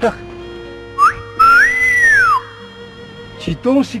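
A person whistling two notes: a short rising note about a second in, then a longer, louder note that rises and falls away, with faint background music under it.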